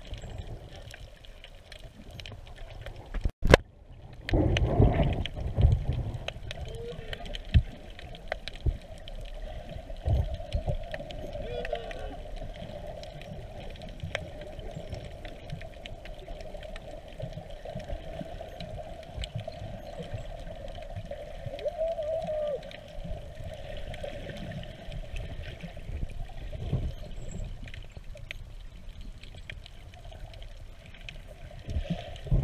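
Underwater sound picked up by a submerged camera: water movement and low knocks against the housing, with a steady hum throughout. A sharp click a few seconds in is the loudest single sound, followed by a burst of heavy knocks and rumbling.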